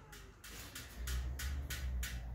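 BMW K1100's inline-four engine idling with a steady low hum and a regular ticking, about seven ticks a second. The owner puts the rough sound down to a crack in one of the exhaust headers.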